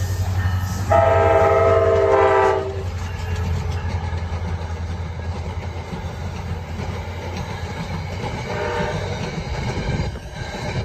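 NJ Transit commuter train's horn sounding one long chord of several notes for nearly two seconds as it nears a grade crossing. The locomotive and its multilevel coaches then rumble past steadily, wheels clicking over the rail joints.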